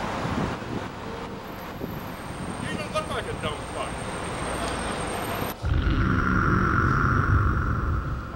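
Street traffic noise and a man's voice, played back from a video over a hall's loudspeakers. About five and a half seconds in, a louder rumbling noise cuts in and holds until near the end.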